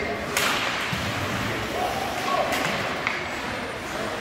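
Ice hockey play heard in an echoing indoor rink: a sharp crack of stick on puck or puck on the boards about a third of a second in, then two lighter clacks later, over the murmur and a brief call of spectators' voices.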